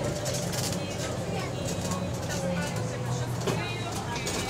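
Bus engine and drivetrain running as the bus moves, heard from inside the passenger saloon: a steady low hum with a thin whine that sinks slightly in pitch before fading. Passengers are talking in the background.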